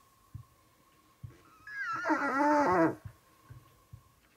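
An orphaned bear cub gives one wavering, pitched cry lasting just over a second, about one and a half seconds in, with a few soft low thumps of movement around it.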